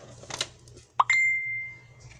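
A short rising blip about a second in, then a single steady high ringing tone that fades out over about a second.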